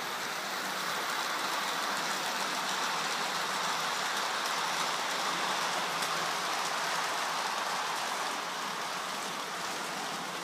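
Model diesel locomotive and its freight wagons running on the layout's track: a steady whirr of the motor and wheels rolling on the rails.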